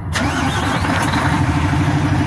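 A heavy truck's diesel engine being started: a click just after the start, then the engine turning over and running with a steady, even low beat.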